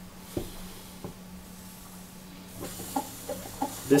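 Electric potter's wheel running with a steady low hum, with a few faint clicks early on and a soft hiss in the second half as a trimming tool scrapes wet clay at the base of a spinning bowl.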